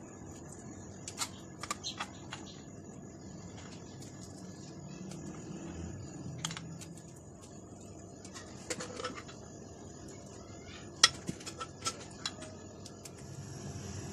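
A spoon working freshly churned butter on a ceramic plate: scattered light clicks and taps of the spoon against the plate, with a small cluster near the end, over a faint steady background.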